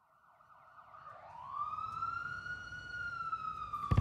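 A siren-like wailing tone with overtones. About a second in it rises steeply, then holds and sinks slowly as it grows louder.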